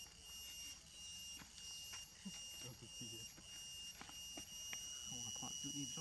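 A steady high-pitched insect drone at two pitches, with faint voices of people talking about halfway through and again near the end, and a few light clicks.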